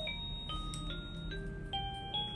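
Battery-powered crib mobile's music box playing an electronic lullaby: a simple melody of single clear chime-like notes, about two or three a second.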